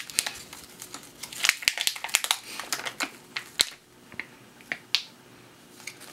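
Clear plastic meat-bar wrapper crinkling and crackling as it is opened and handled: a quick run of sharp crackles, thinning out to a few single clicks near the end.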